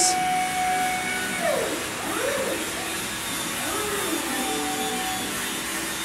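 Electric hydraulic pump motor of a 24-volt Yale walkie pallet stacker running with a steady whirring whine as the two-stage mast raises the forks. The pitch shifts a few times partway through the lift.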